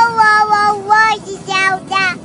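A toddler singing in a high voice: a long held note that ends just under a second in, then a few short notes.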